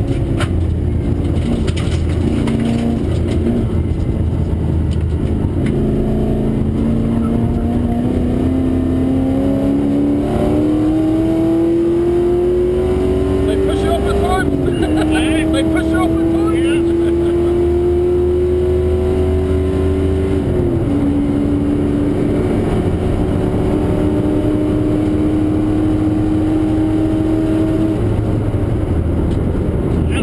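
Holden V8 race car engine under hard acceleration, heard from inside the cabin. Its pitch climbs steadily and drops sharply twice, about halfway through and again a few seconds later, as it changes up a gear, over a constant low rumble.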